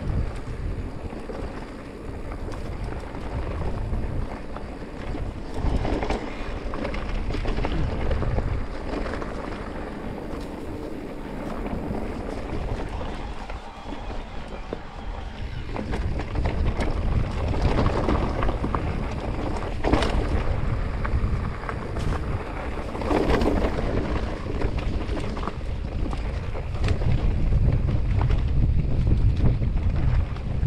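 Wind buffeting the action-camera microphone over the rumble of an electric mountain bike's tyres on a rocky dirt singletrack, with frequent sharp knocks and rattles as the bike hits stones, one loudest knock about two-thirds of the way through.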